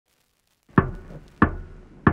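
Start of a soul track: silence, then two sharp drum hits with a low tail, about two-thirds of a second apart, opening the beat.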